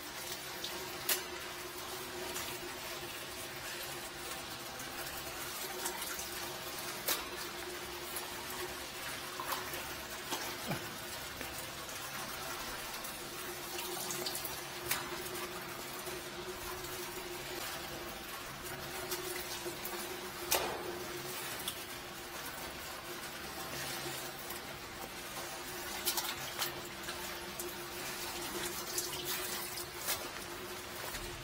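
Water running in a sewage sump pit, an even wash of noise over a constant low hum, with a few sharp knocks and clicks scattered through.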